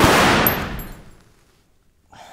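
A pistol shot: a sudden, loud crack whose echoing tail dies away over about a second and a half.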